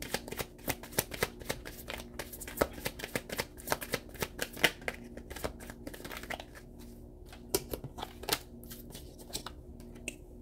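A tarot deck being shuffled by hand: a quick, irregular patter of card edges slapping and snapping together, thinning out over the last few seconds.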